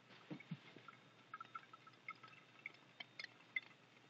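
Near silence with a few faint, irregular drips: brewed coffee dribbling through a paper-towel filter into a glass pot below.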